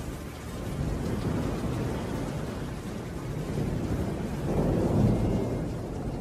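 Recorded thunderstorm effect closing a song: steady rain with low rolling thunder, which swells to a louder rumble about five seconds in.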